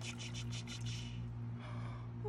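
Water in a plastic tub splashing and sloshing as a small plastic toy dinosaur is dipped in and swished around. There are a few light splashes in the first half-second and a short swish about a second in, over a steady low hum.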